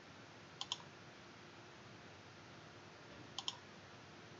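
Two quick computer mouse clicks about three seconds apart, each a crisp double tick, placing points of an arc in a CAD sketch, over faint room hiss.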